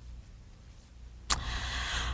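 A steady low hum through a pause in the talk. A little past halfway, a sharp click is followed by a breathy intake of breath just before speaking.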